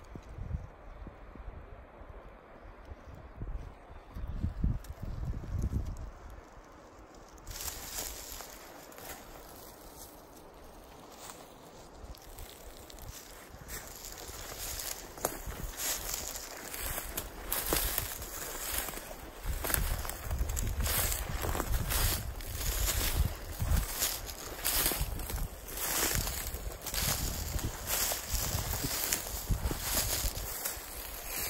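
Footsteps crunching through dry leaf litter and brittle low brush at a steady walking pace. They start a few seconds in and grow louder toward the end.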